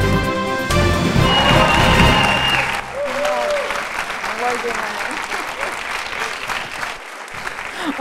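Music for about the first three seconds, then an audience applauding, with a few voices over the clapping.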